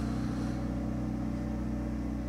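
Steady low engine hum at an unchanging pitch, running on without a break.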